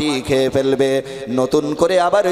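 A man preaching in a chanted, sing-song voice, holding steady pitches on each phrase.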